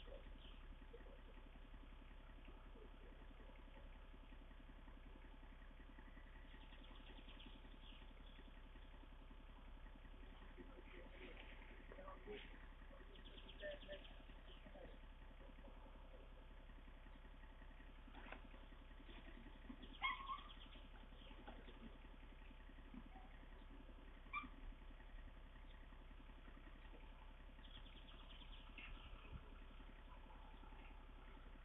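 Near silence: a low steady hum with a few faint, brief knocks and rustles of straw and nest material being handled, the loudest about twenty seconds in.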